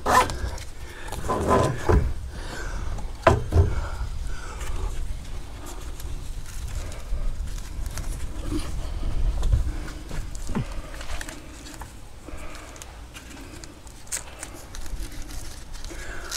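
Handling sounds of a nylon tie-down strap and its buckle being threaded and pulled tight: scattered rustles and a few sharp clicks over a steady low rumble.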